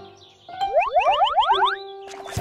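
Cartoon sound effect: a quick run of about eight rising, boing-like pitch glides starting about half a second in, ending on a held note.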